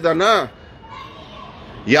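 A man speaking, ending a phrase; a pause of about a second with only faint background sound; then he speaks again near the end.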